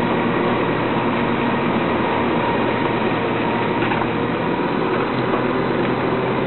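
Garbage truck with a Faun Rotopress rotating-drum body running steadily, its engine holding an even hum, with a couple of light knocks about four and five seconds in.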